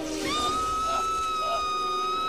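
A person screaming: one long, high-pitched scream that slides up at the start and then holds on one note.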